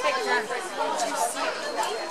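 Background chatter: several people talking at once, no single voice clear.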